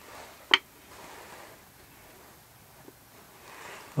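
One sharp wooden knock about half a second in as a small oak and birch-plywood pallet coaster is set down, then faint handling rustle and a light tick.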